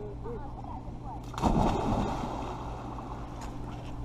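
A person jumping into a swimming pool: one big splash about a second and a half in, with the water churning and settling after it.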